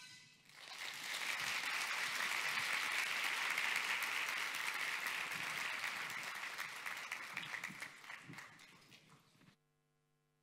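Audience applauding. The clapping builds within the first second, holds, then fades over the last few seconds and cuts off suddenly just before the end.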